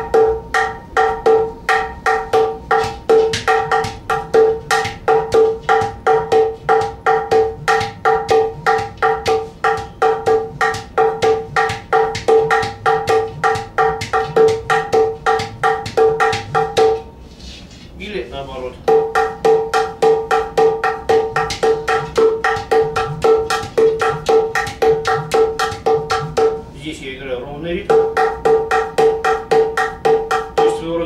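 A Hands on Drums Cajudoo, a cajon–udu hybrid drum, played with both hands in a fast, even stream of strokes. One hand keeps a constant ostinato that rings at a clear pitch, while the other plays a different rhythm on the side bass hole. Twice, about 17 and 27 seconds in, the pattern breaks off briefly for swooping sounds that slide in pitch.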